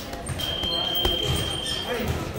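Boxing gym background voices with a single steady high tone lasting about a second and a half, and a couple of weak low thuds.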